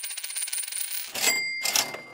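Logo sound effect for an intro animation: a fast run of metallic clicks like a rattling coin, then a bright cash-register-style 'ka-ching' ring a little past a second in that fades out near the end.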